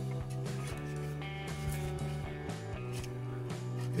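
Background music with steady held notes and a light strummed-guitar feel.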